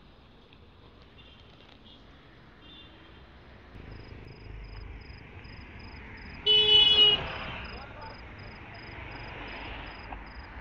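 A vehicle horn honks once, a short honk of under a second, over faint street noise.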